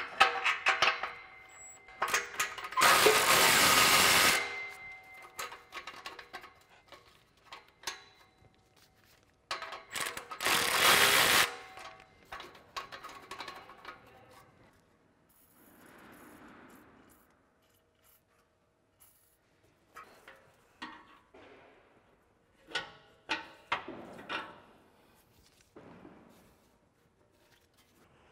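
Electric ratchet spinning the nut off a rusty exhaust clamp in two runs, about a second and a half and then a second long. Scattered metal clicks and knocks follow as the muffler is worked loose, over faint background music.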